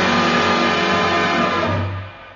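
A radio show's studio band plays a loud, sustained full chord as a musical sting. It is held steadily and dies away near the end.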